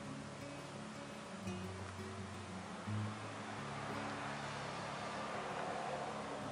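Soft background music with slow, steady low notes. Beneath it, a faint scraping hiss of a heated uncapping knife slicing wax cappings off a honeycomb frame, growing a little in the second half.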